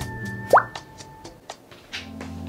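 A quick upward-gliding "bloop" pop sound effect about half a second in, over light background music.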